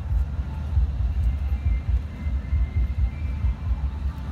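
Wind buffeting a handheld phone's microphone outdoors: an uneven low rumble that rises and falls throughout, with faint steady tones in the background.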